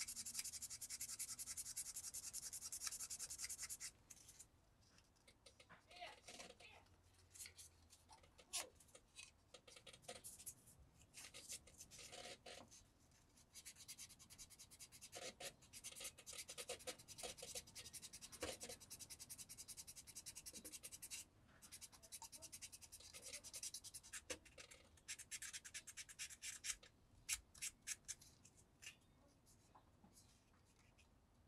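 Fine 2000-grit sanding stick rubbed over a plastic model-kit truck cab part, smoothing out the scratches left by the coarser grits. It starts with a few seconds of steady scratching, then short separate strokes, then another steady run of sanding past the middle, with a few light ticks near the end.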